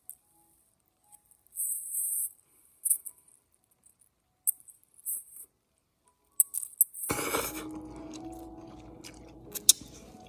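Thin, hissy slurping and chewing of instant noodles in short bursts. About seven seconds in, background music with held notes comes in.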